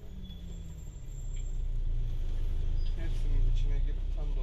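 City bus running, heard from inside the cabin: a low engine rumble that grows louder about a second in, with faint voices in the background.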